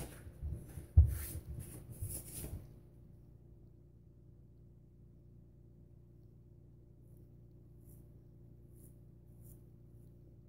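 Handling knocks and rustles as the Parker SRB shavette is moved to the other hand, with a sharp knock about a second in. Then quiet room tone with a steady low hum, and a few faint short scrapes near the end as the shavette's half blade is drawn over stubble on the neck.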